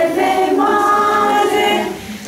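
A group of children singing together, holding long sung notes, with a brief break at the end of a phrase.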